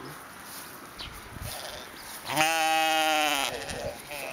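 A sheep bleating once: a single long, loud call lasting a little over a second, starting just past halfway.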